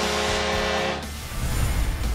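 Music from a highlight package: a held chord that cuts off about a second in, followed by a deep low swell as the transition graphic comes in.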